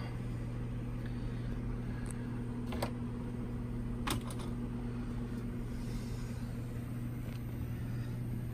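Steady low mains hum from powered-on vintage television and test equipment on the bench, with a couple of faint clicks about three and four seconds in.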